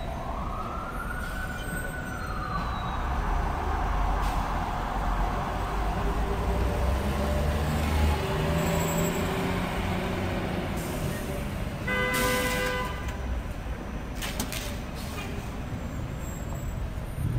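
Street traffic noise: a low engine rumble through the first half, a tone that rises and falls over the first couple of seconds, and a short pitched hoot about twelve seconds in.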